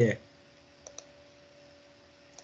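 Two faint, sharp computer clicks about a tenth of a second apart, over a faint steady hum.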